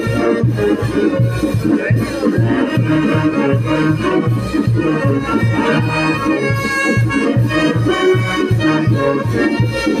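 Brass band playing lively dance music: sousaphones pump a steady, regular bass beat under sustained saxophone and horn harmony.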